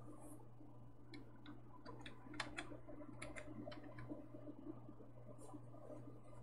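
Faint, irregular small clicks and ticks, a dozen or so over a few seconds, over a low steady hum.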